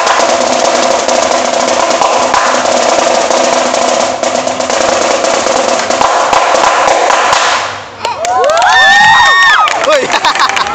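Marching snare drum played in fast, dense strokes and rolls, stopping about eight seconds in. A crowd of children then cheers and shouts loudly.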